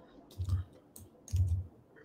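Computer mouse and keyboard clicks as someone edits on a computer: a few sharp, scattered clicks and two soft low thumps.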